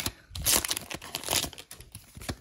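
Pokémon Shining Fates booster pack's foil wrapper crinkling as it is torn open, in two short bursts, about half a second and a second and a half in.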